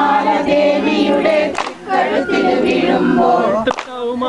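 A group singing an Onam folk song (Onappattu) in chorus for the kaikottikali clapping dance. Two sharp hand claps cut through the singing, about a second and a half in and again near the end.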